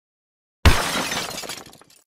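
An editing sound effect of glass shattering: one sudden crash about half a second in, with a rattling tail that dies away over about a second.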